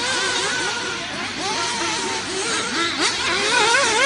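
Several radio-controlled off-road race cars running on a dirt track. Their motors whine up and down in pitch over one another as they accelerate and brake, with a short sharp click about three seconds in.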